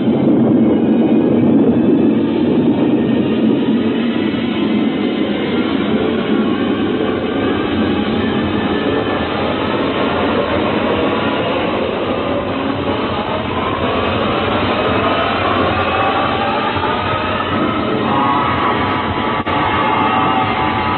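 Radio sound effect of a rocket blasting off: a continuous roar, heaviest and lowest at first, with rising tones building up through it from about six seconds in. The sound is narrow and dull, as on an old broadcast recording.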